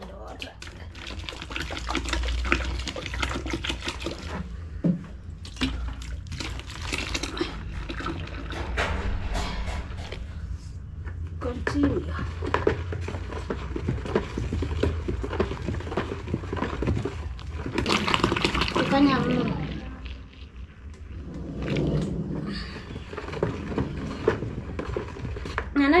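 Wooden stick stirring a frothy liquid-detergent mix in a plastic basin: continuous sloshing and swishing, with many short knocks and scrapes of the stick against the basin.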